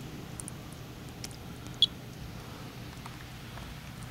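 Monitor 4 Geiger counter giving one sharp, high click a little under two seconds in, a single detected count at a background rate of 20 to 30 counts per minute.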